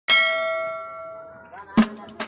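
A single loud bell-like metallic clang that rings out and fades over about a second and a half, followed by a sharp knock near the end.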